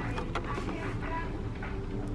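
Quiet shop room tone with a steady low hum, under faint light taps and rustles as a cardboard gift box of syrup bottles is lifted and turned over.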